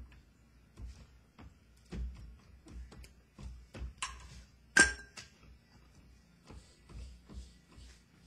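Forearms and hands striking the arms of a homemade Wing Chun wooden dummy fitted with metal stick arms: an irregular run of knocks and taps, two or three a second, with one loud ringing metallic clang near the middle.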